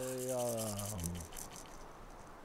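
A man's voice holds a low hum-like note at the end of his sentence. The note falls slightly and stops a little over a second in, leaving faint background hiss.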